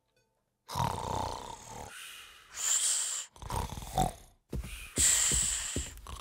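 Cartoon snoring sound effect: rumbling snores alternating with high whistling breaths out, about two full cycles, with light taps near the end.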